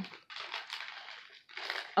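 Handling noise from hands picking up and moving a coiled flat USB charging cable among other items: soft rustling and crinkling in three short bursts.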